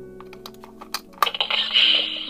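Buzz Lightyear Signature Collection action figure: a run of small plastic clicks as its helmet is worked, then about a second in a loud hiss from the toy's electronic helmet air sound effect, over steady music.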